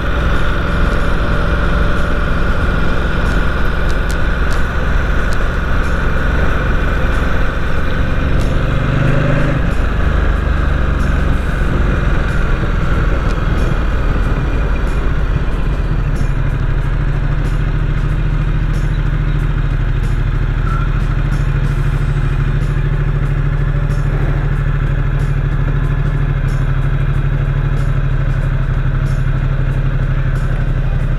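Ducati XDiavel S's 1262 cc Testastretta L-twin engine running as the motorcycle rides slowly through town in low gear. Its note shifts around ten seconds in, then holds a steady low note from about sixteen seconds on.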